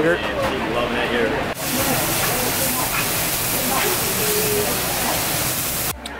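A steady hiss that starts abruptly about one and a half seconds in and runs on under faint chatter, after a moment of voices.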